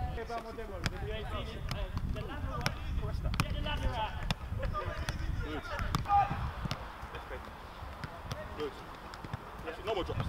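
Footballs being kicked and struck on an artificial pitch, a string of sharp thuds about once a second, with players' voices in the background.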